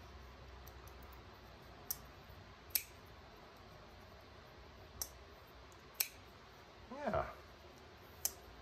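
Fox Knives Baby Core mini liner lock folding knife being opened and closed by hand: four sharp metallic clicks, a second or so apart, as the blade snaps open and shut.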